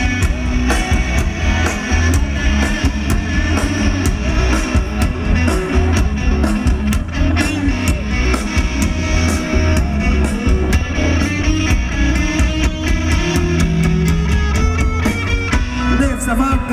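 Rock band playing live: electric guitar over a drum kit keeping a steady beat, with a strong low end, in an instrumental passage without vocals.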